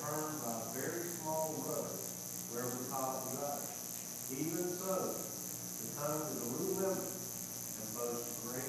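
A man reading a Bible passage aloud, indistinct, with short pauses between phrases. A steady high-pitched hiss with a fast, regular pulsing runs underneath.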